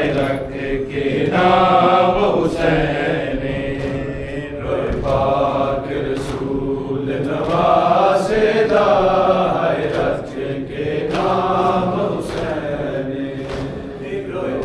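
A group of men reciting a Shia nauha, a mourning lament, in unison as a slow chant of long held notes.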